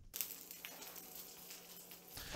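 Faint, steady sizzle of hot grapeseed oil around a skin-side-down salmon fillet in a stainless skillet, with a low steady hum underneath.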